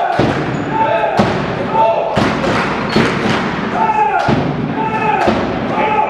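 A volleyball thudding about once a second, with an echo from the hall, over voices in the hall.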